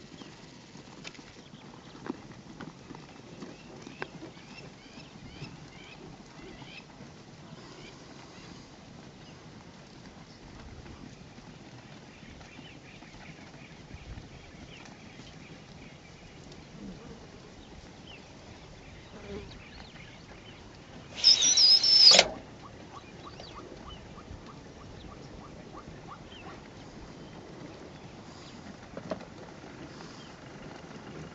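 Faint outdoor background with scattered short high chirps from birds and light ticks. About two-thirds of the way through comes one loud, harsh, high-pitched sound lasting about a second, the loudest thing here.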